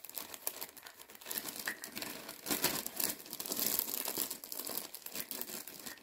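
Packaging crinkling and rustling in quick irregular crackles as small plastic fittings are handled and picked out, busiest in the middle.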